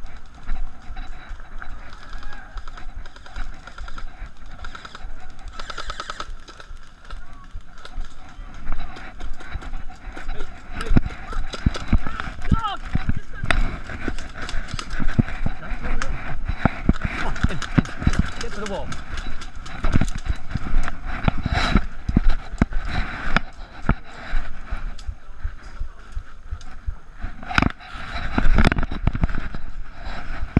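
Irregular clicks and knocks of footsteps and rattling kit, picked up by a body-worn camera on a player moving at pace, over indistinct voices. The knocking grows dense about a third of the way in and again near the end.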